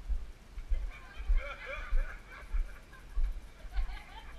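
Footsteps of someone walking with a body-worn action camera, heard as regular low thumps a little under two a second. Faint voices of people talking a short way off sit underneath.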